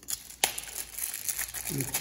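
A single sharp click about half a second in, followed by soft crinkling and rustling of something being handled. A man starts speaking near the end.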